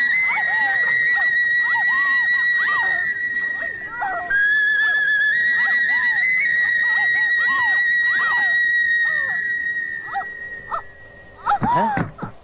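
A long, high whistle held steady with small steps in pitch. It breaks off briefly about four seconds in, resumes, and fades out near the end, over many short rising-and-falling sliding calls.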